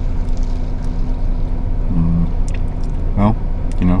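Steady low hum of a car's engine running, heard inside the cabin, with a thin steady tone under it.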